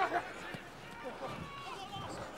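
Players' voices calling out on a rugby pitch, a shout right at the start and fainter calls about a second in, over a low bed of ground noise.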